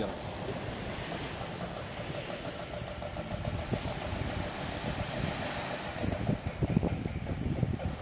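Small waves washing onto a sandy beach, a steady surf, with wind buffeting the microphone in gusts.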